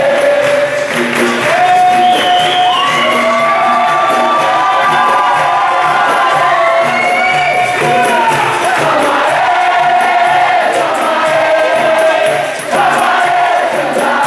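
A large group of capoeiristas singing a capoeira song in chorus, with hand clapping over a steady rhythmic beat.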